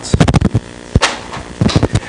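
Handling noise: a string of sharp knocks and bumps, several in the first half-second, one about a second in and a few more near the end, as plastic demonstration props are picked up from the floor.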